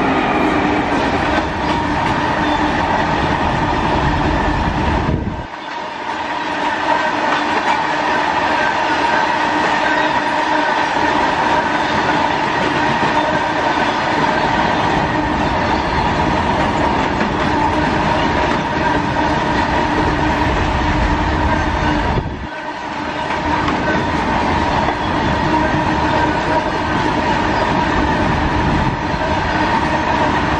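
A long freight train of open wagons, hauled by electric locomotives, rolling past close by at speed. Wheels rumble steadily on the rails with a clickety-clack and a steady ringing tone. The sound dips briefly twice.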